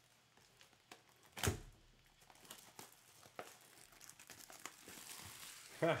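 Plastic shrink wrap crinkling and tearing as it is stripped from a cardboard hobby box of trading cards, with scattered small clicks of the box being handled and one sharp knock about a second and a half in. The crinkling swells near the end.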